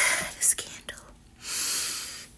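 A woman's whispered, breathy voice: a short whispered sound at the start, a brief hiss, then a longer airy breath-like sound in the second half.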